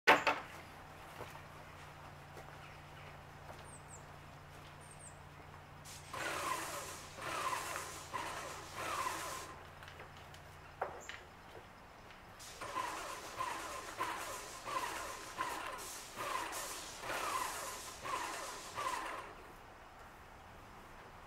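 High-pressure spray from a hand-held wand hitting a wooden bench in repeated back-and-forth sweeps, about one and a half to two a second, in two spells. A low steady machine hum runs under the first half and stops about eleven seconds in.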